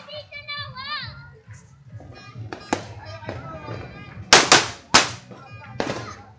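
Firecrackers going off: one sharp bang about halfway through, then four louder bangs in quick succession near the end, with children shouting and chattering between them.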